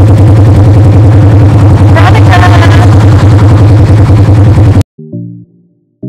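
Polaris RZR side-by-side engine running very loud and steady, with a voice calling out briefly about two seconds in. It cuts off suddenly about five seconds in, replaced by background music of evenly spaced plucked notes.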